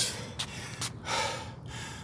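A man breathing hard in a few heavy, gasping breaths, out of breath right after a fast set of push-ups.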